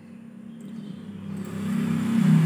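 Low hum of a motor vehicle, growing steadily louder.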